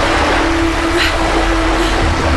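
Steady rushing of sea and wind under held low notes of background music.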